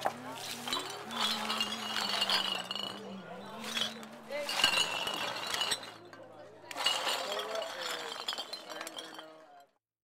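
Glass bottles and street litter clinking and clattering as they are swept up, over a truck engine idling steadily. The sound cuts off suddenly just before the end.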